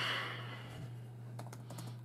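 Typing on a computer keyboard, a few light key clicks, after a short rush of noise at the very start. A steady low hum runs underneath.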